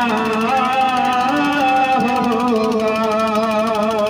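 A man's voice chanting a melodic recitation in one long unbroken line, holding sustained notes that waver and slide in pitch.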